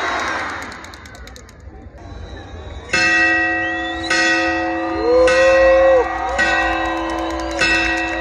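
Crowd cheering dies away, then a large ceremonial bell is struck five times, about one strike every second and a bit, each ringing on into the next, as in the bell-ringing of the Grito de Independencia.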